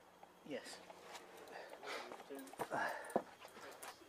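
Small clicks and scrapes of hand tools working among motorcycle wiring, with one sharp snap about three seconds in: side cutters snipping through a plastic cable tie.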